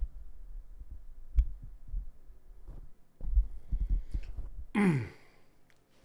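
Handling noise from a broadcast microphone on a boom arm: irregular low thumps and rumbles as it is touched and moved, the strongest about a second and a half in and a cluster in the second half. Near the end comes a short breathy vocal sigh that falls in pitch.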